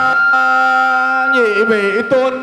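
Vietnamese Buddhist ritual music: one long held melodic note, steady at first, then wavering and dipping in pitch in the second half, with a fainter steady higher tone running above it.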